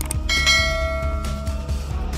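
A single bell chime, struck about a third of a second in and ringing out for about a second and a half: the notification-bell sound effect of a subscribe-button animation, over background music.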